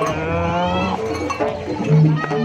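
A long vocal cry, gliding up and then down in pitch for about a second, over Javanese jaranan gamelan music that carries on underneath.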